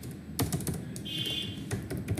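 Computer keyboard typing: a handful of separate, unevenly spaced keystroke clicks as a short word is typed.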